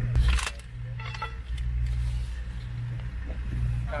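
Sharp metal clicks and knocks in the first half-second, then fainter ones about a second in, from a heavy machine gun being handled. Its headspace is off and is being reset. A steady low rumble runs underneath.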